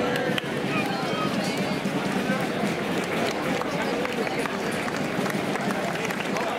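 Street crowd talking, many overlapping voices with no single speaker standing out, with scattered light clicks mixed in.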